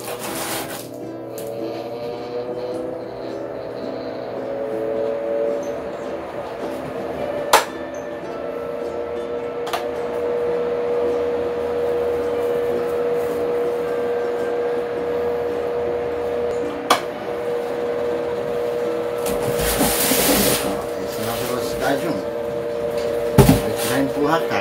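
Philco PVC491PA 10-blade pedestal fan switched on at speed 1 and spinning up: a hum that rises in pitch over the first few seconds, grows louder, then holds steady. A few sharp clicks, and a brief rush of noise a few seconds before the end.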